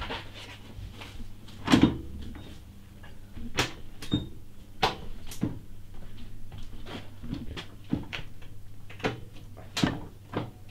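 Irregular clicks and knocks of hands and tools working on a motorcycle, about a dozen scattered through, the loudest a little under two seconds in, over a low steady hum.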